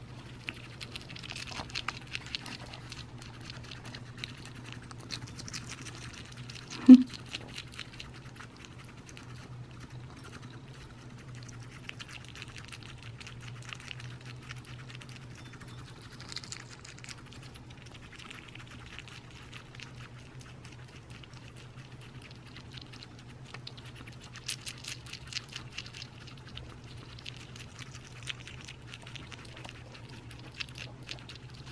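An African pygmy hedgehog chewing mealworms and darkling beetles from a ceramic dish: faint, irregular little crunching clicks in clusters over a low steady hum. There is one brief, much louder thump about seven seconds in.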